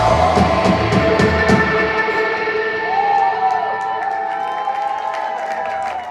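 A live rock band with guitars, drums and keyboard plays its closing chords; the drums stop about two seconds in, leaving guitar and keyboard tones ringing out. The crowd starts cheering and whooping over the fading sound.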